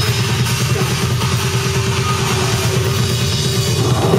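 Rock band playing live and loud, with drums and guitar; the recording sounds rough and distorted.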